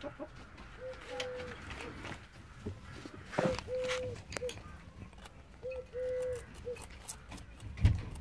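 A bird calling three times, each call a short note, a long held note and a short note on one steady pitch, about every two and a half seconds. Rustling and clicks run beneath the calls, and a loud knock comes near the end.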